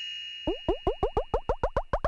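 Cartoon comedy sound effects: a bell-like ding rings out and fades, and from about half a second in a run of short bloops, each falling in pitch, comes faster and faster.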